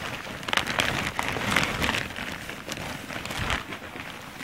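A thin plastic sack crinkling and rustling as a hand rummages through the clothes inside it, with fabric swishing; a dense crackle, loudest in the first half.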